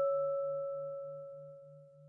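One bell-like note of a slow music-box lullaby rings and fades away. Under it, a soft low hum pulses about four times a second.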